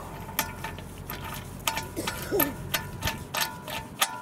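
Steel lug bolt being turned by hand into the wheel hub through a steel space-saver spare wheel: a quick, irregular run of light metallic clicks with a faint ring.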